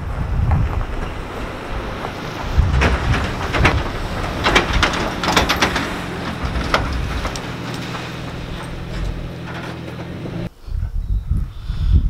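Toyota Tacoma pickup truck engine running as it drives past towing an empty utility trailer over grass, with the trailer's metal frame and gate clanking and rattling over the bumps, loudest in the first half. The sound stops abruptly about ten seconds in.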